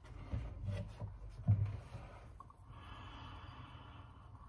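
A glass of cola is handled with a few soft knocks, then a long steady sniff through the nose near the end as the cola is smelled.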